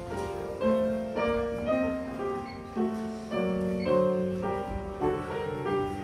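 Slow piano music, with a new note or chord about every half second.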